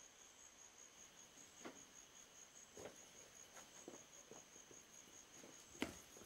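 Faint night ambience of crickets trilling, a high, steady, rapidly pulsing chirr, with a few faint soft taps scattered through it.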